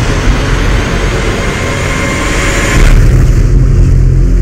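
Trailer sound design: a loud, dense rushing roar with a deep rumble underneath. It cuts off about three seconds in, leaving a low sustained drone.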